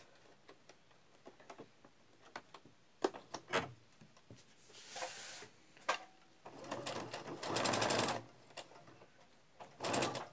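Electric domestic sewing machine stitching a zip panel in one short run of about a second and a half, the needle going at roughly a dozen stitches a second. A few light clicks and a brief rustle come before it.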